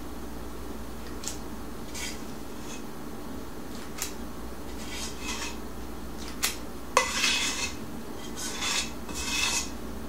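A spatula scraping and tapping on a cookie sheet among set no-bake cookies: scattered light clicks, then a sharp tap about seven seconds in followed by short scrapes, and more scraping near the end. A steady low hum sits underneath.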